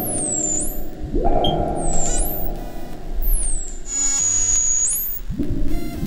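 Live electronic jam on a hardware synthesizer rig (Elektron Octatrack MKII, Instruo Scion, Bastl Softpop 2, Moog Grandmother). A dense, low, rumbling synth tone has its filter swept open about a second in and again near the end. Over it, high whistling tones swoop down and back up in pitch, holding one high note for about a second past the middle.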